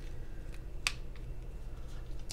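Paper sticker strip being slowly peeled off its backing sheet, a faint papery sound with one sharp click a little under a second in, over a low steady hum.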